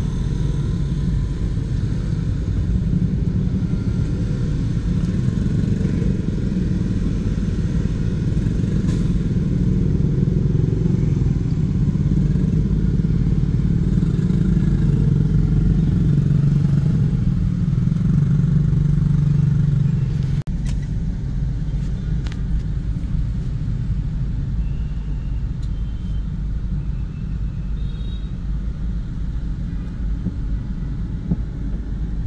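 Dense motorbike and car traffic heard from inside a car moving slowly through it: a steady low rumble of engines and road noise, with motorbikes close alongside. About two-thirds of the way through, the rumble drops abruptly to a lower level.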